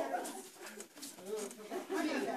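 People's voices in a small room, broken up and low, dipping quieter about halfway through.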